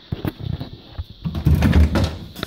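Handling noise as a phone is moved around a wooden cupboard: rustling and several light knocks, then a denser low rumble in the last half second.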